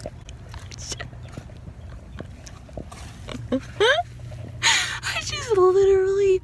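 A woman's wordless vocal sounds: a quick rising squeal about two-thirds of the way in, then a held, strained note near the end, over a faint steady low hum.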